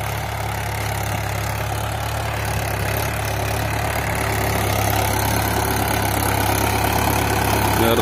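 Mahindra 585 DI tractor's four-cylinder diesel engine running steadily under load as it pulls a seed drill, growing gradually louder as it approaches.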